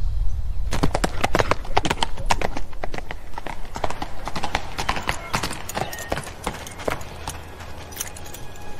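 A horse's hooves clip-clopping along a path as it is ridden up. The hoofbeats start about a second in and thin out and grow quieter toward the end as the horse comes to a stop.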